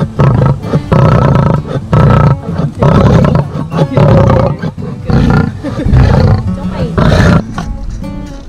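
Lioness roaring: a series of about eight loud roars, roughly one a second, stopping near the end.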